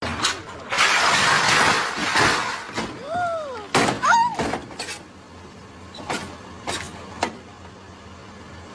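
A full-size pickup truck pushing into a parked car: a loud rush of engine and grinding noise for about two seconds, then cries of alarm, then several sharp cracks of bodywork breaking.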